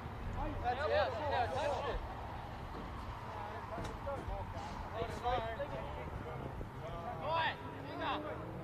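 Footballers on the pitch shouting short calls to one another during open play, three brief bursts of shouting over a steady low background rumble.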